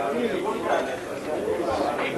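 Several people talking at once, an overlapping murmur of voices with no single clear speaker, from members of a meeting in the middle of a nomination.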